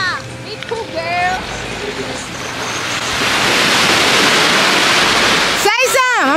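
Shallow sea water washing and lapping at the shoreline: a steady rushing that swells louder over the second half. People's voices call out briefly at the start and again near the end.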